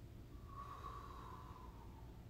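Faint breath out through the nose with a thin whistling tone, lasting about a second and a half, over a low steady room hum.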